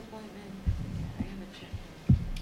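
Meeting-room background during a pause: a steady low hum with faint, indistinct talk, broken by three soft low knocks about half a second apart.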